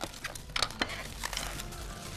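Thin plastic sheet crinkling as hands handle it, an irregular run of small crackles, with faint background music underneath. The plastic is the cover laid over yufka pastry sheets to keep them from drying out.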